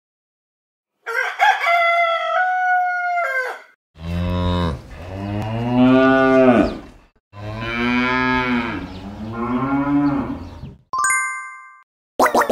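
Farm-animal sound effects: a rooster crowing, then a cow mooing twice in long, low calls, then a short bell-like ding just before the end.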